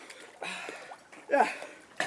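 Faint sloshing of water in a small above-ground pool as the men shift in it, broken by a man's short spoken word a little past halfway.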